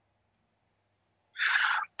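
Near silence, then about a second and a half in, a short audible intake of breath lasting about half a second, taken just before speaking.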